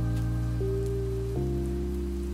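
Slow, soft background music of sustained chords, changing chord about two-thirds of the way through, over a faint steady rain-like hiss.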